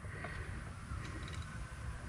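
Quiet workshop background: a steady faint low rumble with a few soft ticks.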